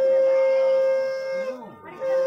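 Conch shell (shankha) blown in one long, steady, pitched blast that stops about one and a half seconds in, with a second blast starting right at the end. It is sounded for the Bengali wedding rites. Voices are faint beneath it.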